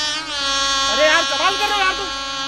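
A voice holding one long, steady note, with a second voice rising and falling over it in the middle.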